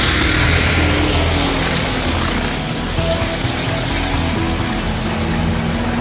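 Diesel dragster at full throttle launching and running down the strip, a loud rushing engine noise that eases off a little as it pulls away, with background music under it.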